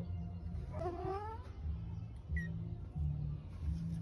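A cat meowing once, a single rising call about a second in, with a brief faint chirp a little later.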